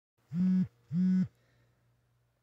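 Two short, low electronic beeps of the same steady pitch, each about a third of a second long and about half a second apart, followed by a faint hum.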